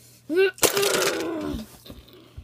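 A child's voice crying out in play-acted pain: a short 'ah', then a long drawn-out 'ahh' that falls in pitch as it dies away. A sharp knock, like plastic bricks being hit, comes about half a second in.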